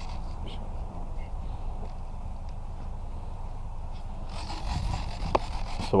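Wind rumbling and buffeting on the microphone, steady throughout, with a brief soft rustle about four and a half seconds in.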